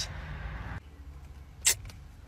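Steady low rumble of road and engine noise inside a moving car's cabin, cutting off abruptly less than a second in; after that it is quieter, with one brief sharp sound near the end.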